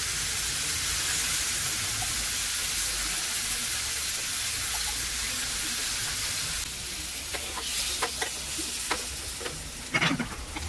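Stuffed squid sizzling in hot oil in a frying pan, a steady hiss. About two-thirds of the way through the sizzle eases and a few sharp crackling clicks come through.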